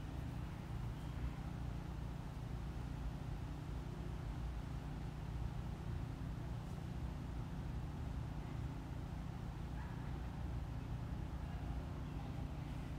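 Steady low background rumble, even throughout with no distinct events.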